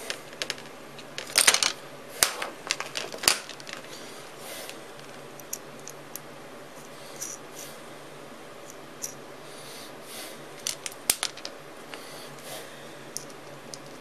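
Small metal clicks and light rattles of bolts and nuts being handled and tightened on a circuit-board-sized switch board with a hand tool. The clicks come irregularly, with busy clusters about a second in, around two to three seconds, and again near eleven seconds.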